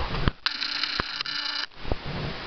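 A handheld digital camera's zoom motor whining as the lens zooms in. It is a steady whine of about a second with a brief break partway through, and a soft click follows near the end.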